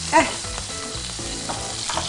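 Chicken fillet sizzling steadily in a frying pan.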